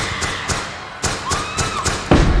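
A rhythmic series of sharp percussive hits, about four a second, in a live pop song's intro, with a short high tone that rises and falls over them about a second in.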